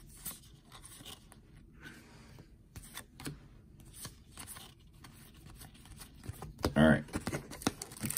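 Trading cards being slid off a stack one by one in the hands: faint papery slides and light flicks. A brief voice sound comes near the end.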